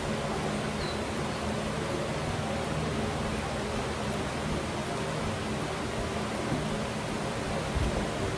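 Steady kitchen background hiss with a faint low hum underneath, unchanging throughout; no distinct knife or cutting sounds stand out.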